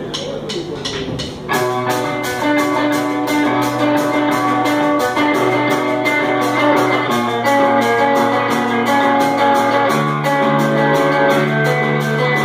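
A rock band playing live: the drums keep time on the cymbals, then about a second and a half in the full band comes in louder with electric guitars, bass and drums in a steady beat.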